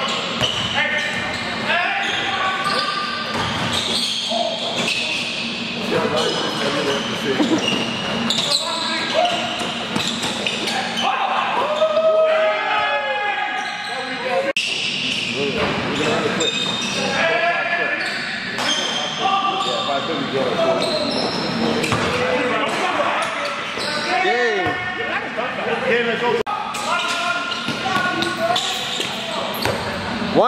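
Indoor basketball game sounds: the ball bouncing on the court and players' voices, echoing in a large gym. A few short squeals rise and fall partway through and near the end.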